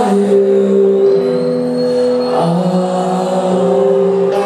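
Live alternative-metal band with electric guitar playing long held chords that change about once a second over a steady drone.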